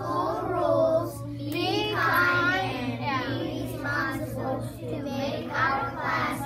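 A group of young children singing together in unison in phrases, with a steady low hum underneath.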